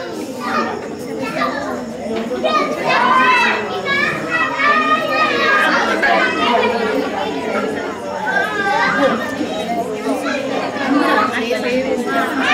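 A group of women and children talking over one another: steady, overlapping chatter of many high voices, with no one voice standing out.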